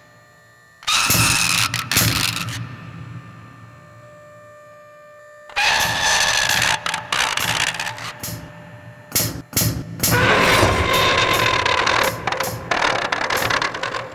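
Sci-fi animation sound effects: sudden loud bursts of electronic crackling and clicking, about a second in, again at about five and a half seconds, and a longer run from about nine to thirteen seconds. Quieter stretches with a faint hum lie between the bursts.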